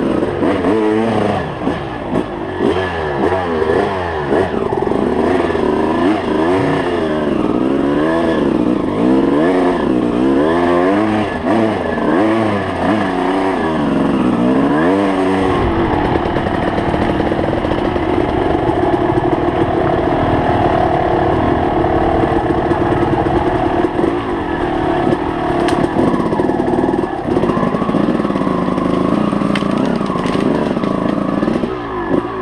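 Enduro dirt bike engine heard close up from the bike itself. For the first fifteen seconds it revs up and down about once a second with the throttle over the trail, then runs at a steadier pitch.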